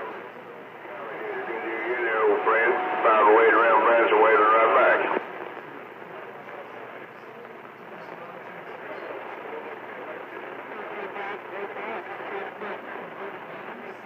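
CB radio receiver audio: a garbled, unintelligible voice transmission that builds up from about a second in and cuts off abruptly about five seconds in, as the far station unkeys. Steady band static follows.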